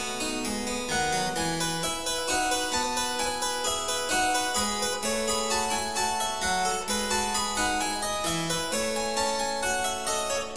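Harpsichord playing Baroque music: a continuous, lively stream of plucked notes, with several melodic lines sounding at once.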